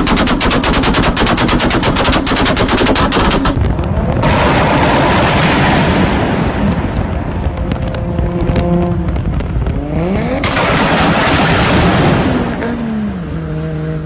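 Nissan 240SX's swapped-in 1JZ straight-six engine revved and held at the top, firing a rapid machine-gun-like string of bangs for about three and a half seconds. It then drives hard through a tunnel: a loud exhaust roar, revs climbing sharply about ten seconds in, then falling off near the end.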